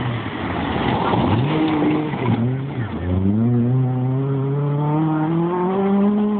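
Rally car on a gravel forest stage passing close by, its engine revving hard. In the second half the engine's pitch climbs steadily as the car accelerates away.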